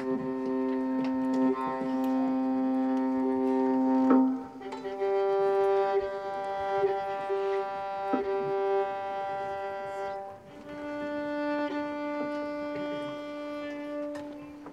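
A bowed string instrument holding long, steady notes one after another: a low note for the first four seconds or so, a higher note until about ten seconds in, then a note between the two. A few faint clicks and knocks sound underneath.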